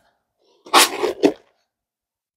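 A single short, breathy human vocal sound of under a second, near the middle.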